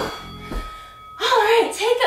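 A held electronic tone fading out, with a soft low thud about half a second in, then a woman starting to speak a little over a second in.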